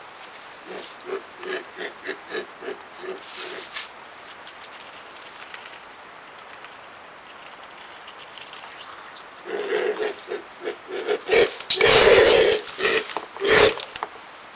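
Black vultures grunting: a quick run of short, low grunts, about three a second, then after a pause a louder run mixed with rough, harsh bursts near the end. This is feeding-time grunting between an adult and its flightless juvenile.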